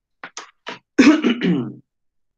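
A man clearing his throat and coughing: a few short sharp coughs, then a louder, longer throat-clearing about a second in.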